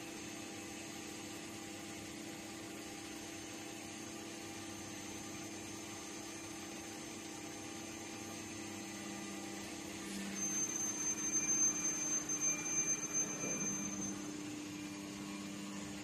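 Mitsubishi 1050-ton plastic injection molding machine running with a steady low hum. From about ten to fourteen seconds it gets louder and uneven, with a high whistle on top.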